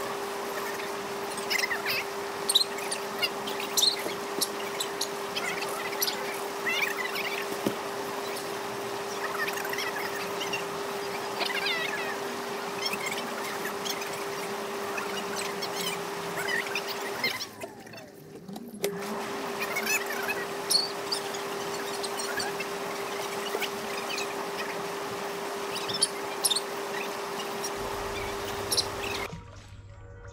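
Intex inflatable bubble spa running: a steady hum from its motor over the hiss of bubbling water, with small birds chirping on and off. The sound drops out briefly a little past the middle and cuts off just before the end.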